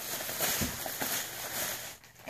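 Plastic shopping bag and plastic packaging rustling and crinkling as an item is taken out of the bag.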